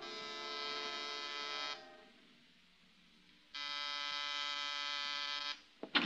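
Radio-drama sound effect of an apartment door buzzer pressed twice: two steady buzzes of about two seconds each, separated by a pause of nearly two seconds. A short click comes near the end.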